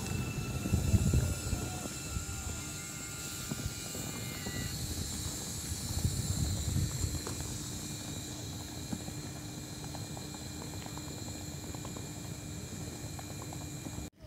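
Electric intercity train running along the platform: low rumble of wheels on the rails with steady high whines from its electric traction equipment. About five seconds in, some of the higher whines stop and a lower steady hum carries on.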